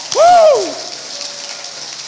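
Congregation applauding, with one loud whooping cheer that rises and falls in pitch right at the start.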